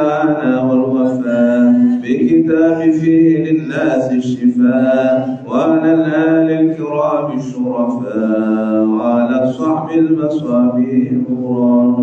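A man chanting a religious recitation in a melodic voice, holding long steady notes in phrases of a few seconds with brief pauses for breath.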